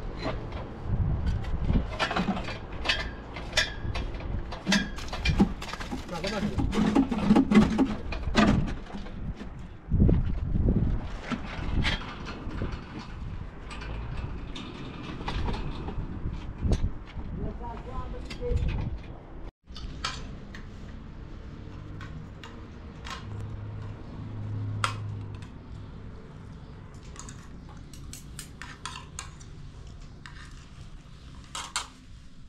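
Knocks and clatter of building work at a concrete column's metal formwork, with men's voices. About two-thirds of the way in this gives way to quieter light clinks of spoons on plates as people eat.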